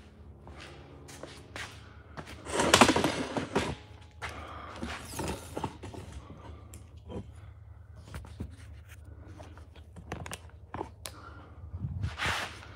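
Scattered light knocks and clatters of objects being handled, with one louder rustling noise lasting about a second a few seconds in, over a steady low hum.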